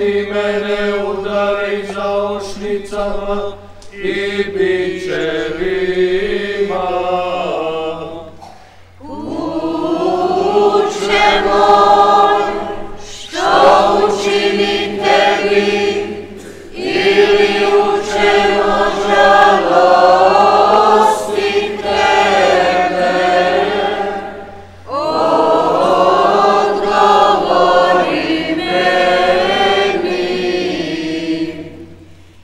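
Church choir singing a hymn in long, held phrases, pausing briefly between phrases.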